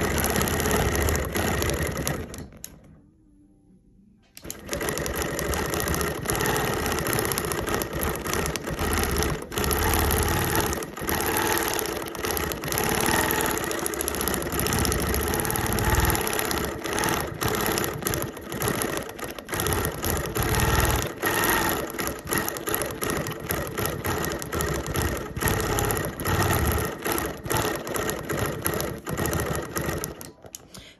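Quilting machine stitching steadily. It stops for about two seconds near the start, then runs again for the rest of the time.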